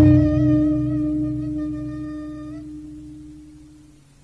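A struck gamelan gong rings out and slowly dies away. Its low steady tone fades to almost nothing by the end. A higher, slightly wavering held note sounds over it and stops about two and a half seconds in.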